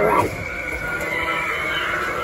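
A high, wavering shriek from a Halloween animatronic prop's sound effect. It opens with a quick rise in pitch and then holds.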